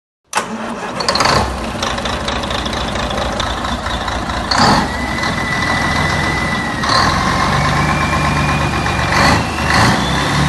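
A heavy diesel truck engine starts and runs steadily, with short bursts of hiss several times and a thin whine that rises slowly in pitch over the second half.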